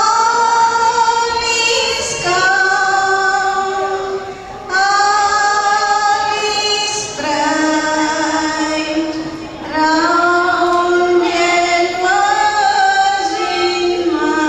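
Women singing a slow hymn in long held notes, phrase after phrase of about two to three seconds, the lead voice carried by a handheld microphone.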